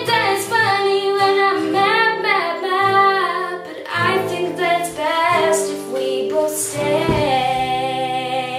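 A young woman singing with an acoustic guitar strumming chords, ending on a long held note.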